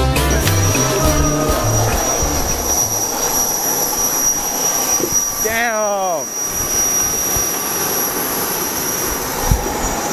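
Aircraft engines running with a steady high-pitched whine over a constant rush. Background music fades out in the first two seconds, and a voice slides down in pitch briefly about halfway through.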